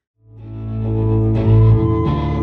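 Live rock band's electric guitars and bass fading in from silence, holding sustained notes and chords, swelling louder about one and a half seconds in.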